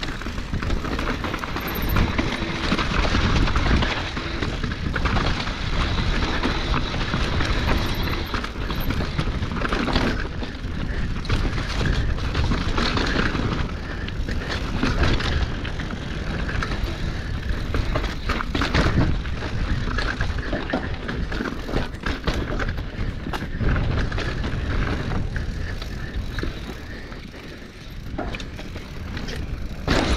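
Mountain bike riding down a rough dirt and rock singletrack: tyres crunching over the ground, and the bike rattling over bumps with many short knocks, under a steady rush of wind on the microphone. It eases briefly shortly before the end.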